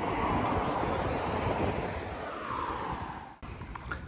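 Rushing noise of traffic on the road beside the walkway, with a falling tone as a vehicle passes and fades away over about three seconds. It cuts off suddenly near the end, leaving a quieter outdoor background.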